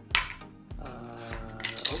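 A single sharp plastic click as a small toy capsule is handled, just after the start, followed by background music.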